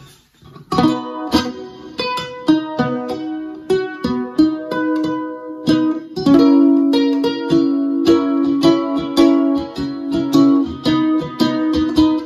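Lava U carbon-composite tenor ukulele strummed through a Kinsman acoustic guitar amplifier, with chorus and reverb from the ukulele's own onboard effects. The chords ring on and start about a second in.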